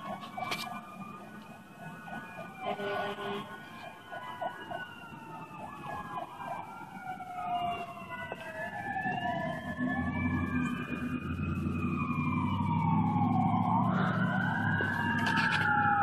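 Several emergency-vehicle sirens wailing at once, their pitches sweeping up and down out of step with each other. They grow louder through the stretch, with heavy engine rumble coming in from about nine seconds on.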